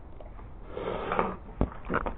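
Handling noise as the camera is moved: a short rustle, then a sharp knock about one and a half seconds in and a softer click just before the end.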